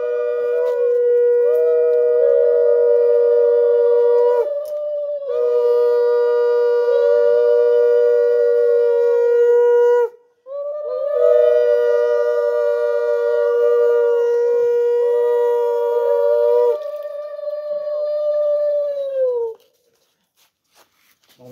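Two conch shells (shankha) blown together in long held blasts, one on a steady lower note and one on a higher, wavering note. The blasts break for a breath twice. Near the end the lower conch stops and the higher one fades out.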